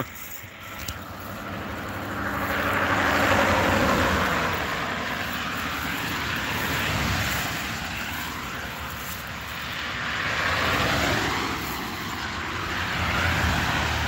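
Cars passing on a road, their tyre and engine noise swelling and fading about four times. A short laugh at the very start.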